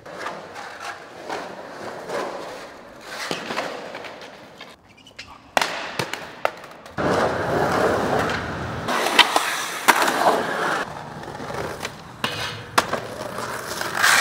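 Skateboard wheels rolling on concrete, with sharp clacks of the board being popped and landing. The rolling gets louder about halfway through.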